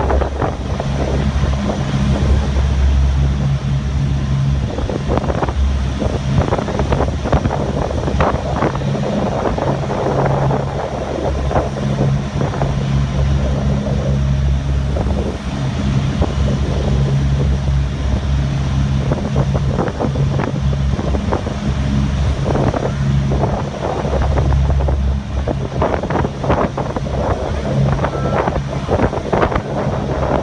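A fast passenger ferry under way: the steady drone of its engines, swelling and easing, under the rush of water along the hull and gusts of wind buffeting the microphone on the open deck.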